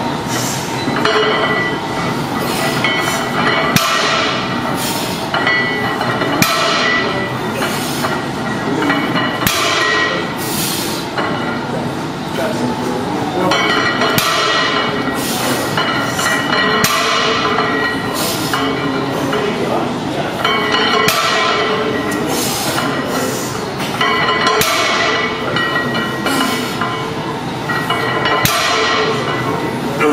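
Heavy barbell deadlift reps: iron weight plates knocking and clinking, with short, sharp hissing breaths every second or two, over a steady dense background.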